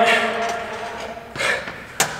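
A man's drawn-out, fading "all right", then a single heavy exhale about a second and a half in: he is out of breath after a max-effort squat.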